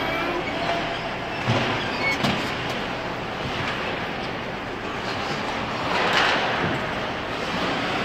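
Ice hockey rink sound heard from beside the glass: skates scraping and carving on the ice over a steady arena hum. There are two sharp knocks about one and a half and two and a quarter seconds in, from sticks, pucks or the boards, and a louder scraping hiss about six seconds in.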